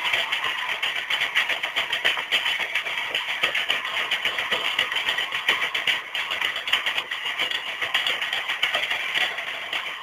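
Live concert audio: music and crowd noise blended into a dense, fluctuating din.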